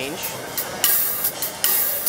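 Zildjian Gen16 AE electronic-acoustic hi-hat played with sticks and amplified through its direct-source pickup and DCP processor on a lighter hi-hat tone-shape preset. From about a second in come a few bright, hissy strokes, each ringing for a few tenths of a second.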